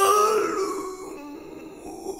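A man's voice stretching out the word 'Largo' very slowly: one long vowel held on a single pitch, loud at first, fading over about a second and then trailing on faintly.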